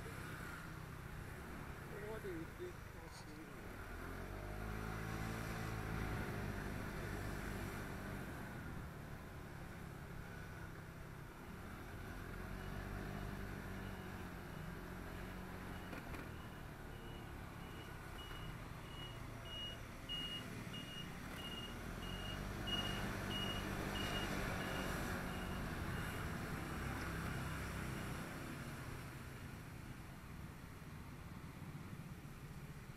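Small scooter engine running under the rider, its pitch rising and falling repeatedly as it speeds up and slows in traffic. From about halfway through to near the end, a thin high beep repeats about twice a second.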